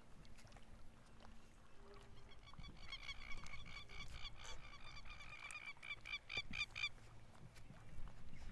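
A bird giving a rapid series of short, repeated calls, several a second, starting about three seconds in and lasting about four seconds, over faint low background noise.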